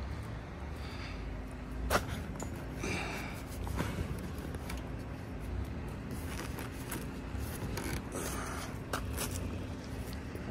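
Handling of a flatbed trailer's tarp and bungee cords: a few light clicks and scrapes over a faint steady hum.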